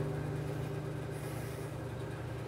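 Acoustic guitar's final chord dying away, its low note ringing on steadily while the sound slowly fades.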